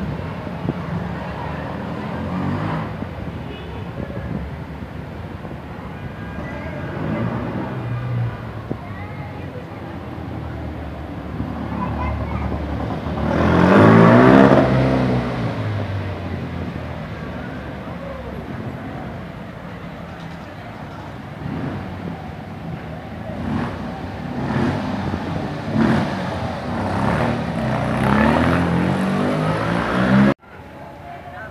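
Car engines and traffic in a narrow town street. One vehicle passes close about 13 to 15 seconds in, the loudest sound, its engine note shifting in pitch as it goes by. People's voices are heard later.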